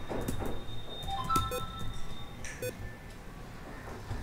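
Computer keyboard keys clicking in short, irregular bursts as an email address is typed. A few brief steady tones sound faintly behind the clicks.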